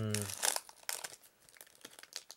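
Crinkling and rustling of a Yu-Gi-Oh Duel Overload booster pack and its cards being handled, in short irregular clicks and rustles. A drawn-out spoken word trails off in the first half-second.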